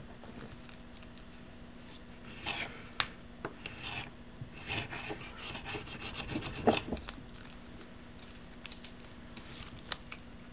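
Gloved hands working a small scrap of cloth on a workbench: intermittent rubbing and rustling, with a few sharp clicks in the middle.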